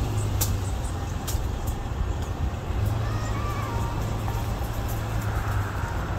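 Steady low hum and rushing road noise of a motor vehicle, with a few faint clicks.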